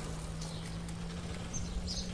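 Small motorcycle engine running steadily as it rides past on the road, a low even hum over outdoor rumble.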